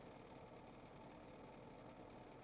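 Near silence: a faint steady hum of a car interior.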